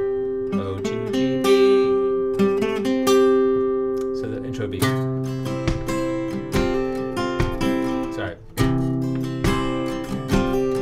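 Capoed steel-string acoustic guitar playing a melodic run of single notes, then strummed chords from about halfway, roughly one stroke a second.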